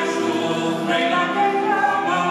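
Live singing accompanied on a grand piano, with notes held and changing in pitch as a song.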